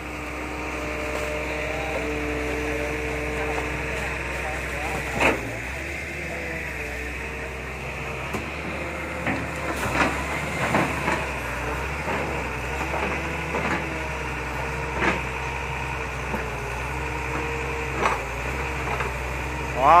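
Excavator's diesel engine and hydraulics running steadily under load as the dredging bucket works, with a handful of sharp knocks from the bucket and boom, one as the bucket plunges into the water about halfway through.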